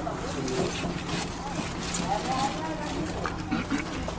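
Indistinct background voices talking, with a steady low hum underneath and a few faint clicks.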